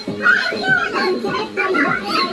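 Several voices of women and children talking and calling out over one another, with music playing underneath.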